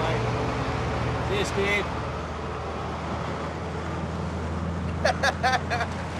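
Small Chevrolet pickup truck's engine running as the truck pulls away, a steady low hum. A few short shouts come near the end.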